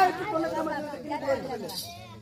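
Speech: a voice talking, fading toward the end.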